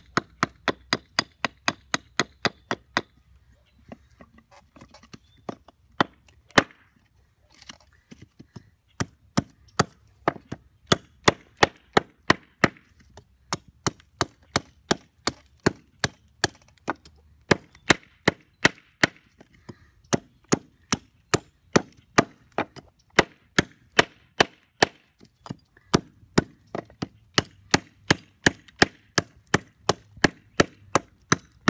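Small carving hatchet chopping into a hand-held block of old fence-post wood, sharp strikes about three a second that split off chips. The strikes thin to a few scattered, lighter ones for several seconds early on, then pick up again in a steady rhythm.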